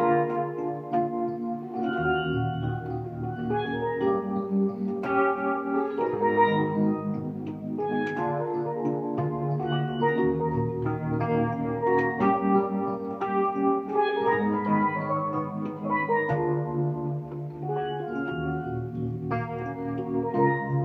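Steelpan played with sticks, picking out a quick melody of struck, ringing notes over sustained electronic keyboard chords.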